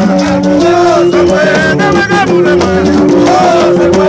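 Live gagá music played loud: low held notes run under wavering singing voices, with sharp percussion strikes throughout.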